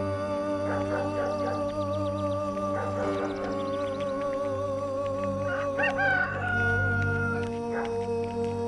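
Soft background music with long, wavering held notes over a steady low drone, and a rooster crowing about six seconds in, its call ending on a long held note.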